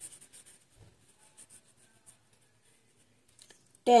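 Felt-tip marker scribbling quickly back and forth on paper while colouring in a circle, about seven strokes a second. The scribbling stops within the first second, followed by a few faint taps.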